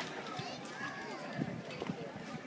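Indistinct voices talking nearby, with footsteps on paving stones.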